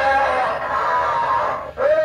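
Halloween animatronic zombie prop playing its recorded scream through its built-in speaker: one long, harsh, dense cry that breaks off about a second and a half in, then a new wavering wail starts near the end.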